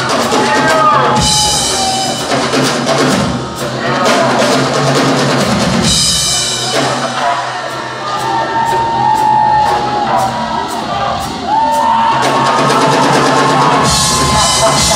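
Live rock drum kit solo: fast rolls and fills across snare, toms and bass drum, with cymbal crashes about a second in and again around six seconds in.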